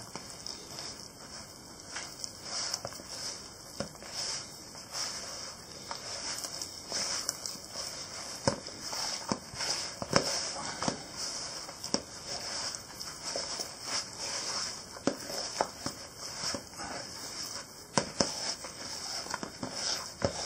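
A hand mixing sticky sourdough dough of flour, water and starter in a plastic bowl, giving irregular soft clicks and crackles as the fingers squeeze the dough and brush the bowl's sides.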